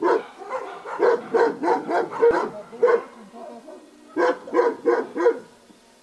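A dog barking repeatedly in quick runs of short barks, with a pause about three seconds in.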